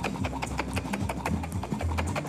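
Hot milk sloshing and knocking inside a lidded glass jar wrapped in a cloth as it is shaken hard by hand to froth the milk: a rapid, irregular run of knocks. Background music with a bass line plays underneath.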